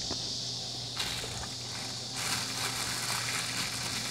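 Thin plastic bag rustling and crinkling as it is handled, getting busier about two seconds in, over a steady low hum.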